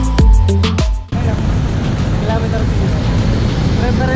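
Music with a heavy beat cuts off about a second in, giving way to steady road traffic noise heard from a bicycle riding among queued cars, with snatches of voices.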